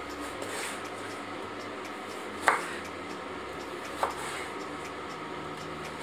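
Kitchen knife slicing carrots on the bias on a wooden cutting board: two sharp knocks of the blade meeting the board, about two and a half and four seconds in, over a steady faint hum.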